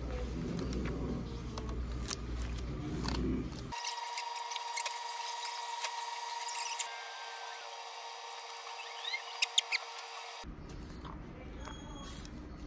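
Eating a crunchy Doritos taco shell: bites and chewing with scattered crisp clicks, and three sharp, loud crunches close together late on. For much of the middle the sound is thin, with the low end gone and a steady faint whine underneath.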